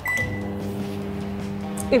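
LG countertop microwave oven starting up: a short high button beep, then a steady low hum as it runs.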